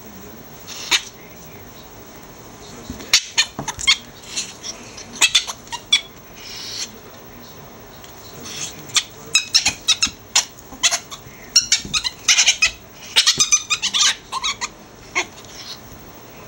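Two ferrets squeaking while they wrestle in a laundry hamper: short, high, sharp squeaks, a few scattered at first, then coming in quick runs in the second half.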